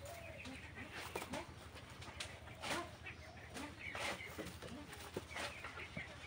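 Broiler chickens giving faint, scattered short clucks.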